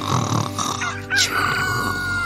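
A rooster crowing once, its long final note held from about a second in and dropping at the end, over background music.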